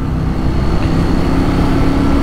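Ducati Monster 821 motorcycle's L-twin engine running steadily while riding along a town street at moderate speed.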